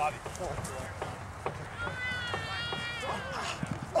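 Players calling out across an open grass field, with one long, drawn-out high shout about two seconds in.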